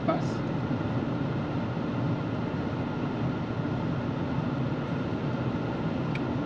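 Steady low hum and noise inside a car cabin, with no distinct events.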